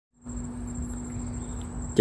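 Kato HD512E tracked excavator's diesel engine idling with a steady low rumble, under a thin, steady, high-pitched insect whine.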